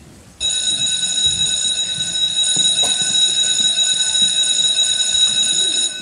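Electric bell ringing steadily and loudly, starting suddenly just under half a second in and stopping near the end.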